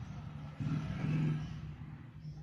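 A motor vehicle's engine running with a steady low hum that swells louder about half a second in and eases off after about a second.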